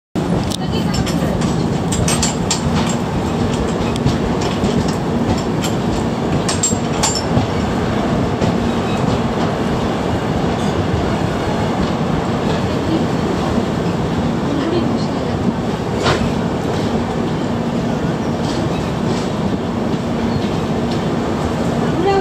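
Passenger express train heard from aboard its coach while running into a station: a steady rumble of wheels on rail with a low hum. Sharp ticks and clicks come in clusters, as the wheels run over points and crossings at the junction approach.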